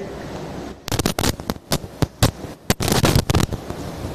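Electrical crackling in the audio line, most likely the presenter's microphone: irregular sharp pops and crackles over a hiss, starting about a second in and dying away near the end. It is interference noise, called "ruido" (noise) at the moment it happens.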